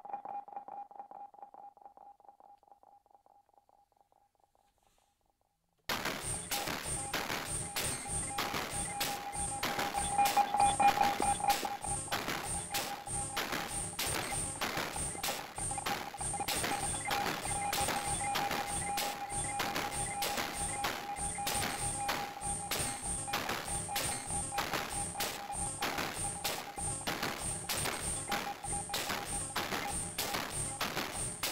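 Modular synthesizer music from a Moog DFAM and Mother-32 rig: a fast, even electronic percussion pattern with a steady mid-pitched tone and high ticks over it. It fades out over the first few seconds, goes silent, then starts again abruptly about six seconds in and carries on.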